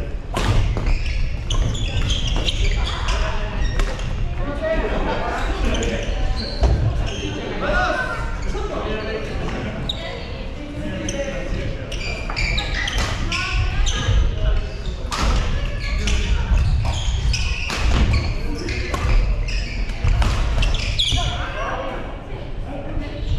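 Badminton rackets hitting shuttlecocks, sharp hits at irregular intervals from several courts, echoing in a large gym hall, over people's voices.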